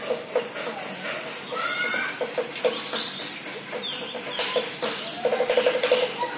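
Animal calls in the open air: scattered short calls with a few rising cries, then a fast run of about a dozen rapid pulsed calls near the end, over faint background voices.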